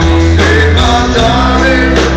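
A live band playing a slow rock ballad with guitar and a strong bass line; a bending melody line comes in about half a second in.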